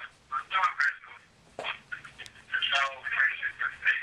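Voices on a voicemail played back through a phone's loudspeaker, thin and telephone-narrow, with a short pause about a second in.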